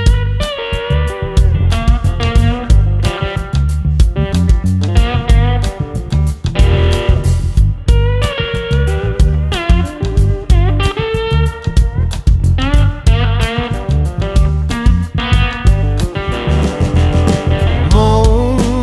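Blues rock band playing an instrumental passage: electric guitar lines over bass guitar and drums, with a steady driving beat.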